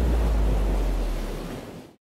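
Surf washing on a beach, a steady rushing noise with a deep rumble under it, fading out over the last half second.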